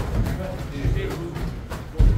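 Boxing gloves striking during a sparring exchange, with one sharp slap of a punch landing near the end, over faint background music.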